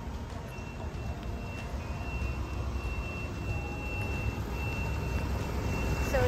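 A motorcycle engine approaching along the street, growing louder toward the end, over a steady low rumble of traffic. A faint, thin, steady high whine runs through the middle.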